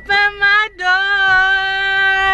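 A woman's voice singing: two short notes, then one long, steady held note from just under a second in.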